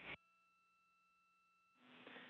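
Near silence on an open radio communications loop: faint steady hum tones. A transmission cuts off just at the start, and a radio channel's hiss opens near the end.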